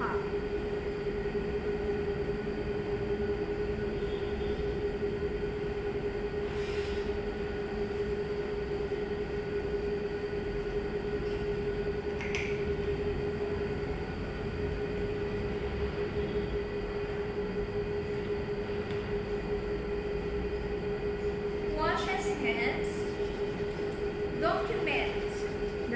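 Steady mechanical room hum with one constant mid-pitched tone, like a ventilation unit or fan running, with a couple of faint clicks of items handled on a table about 7 and 12 seconds in. A brief voice comes in near the end.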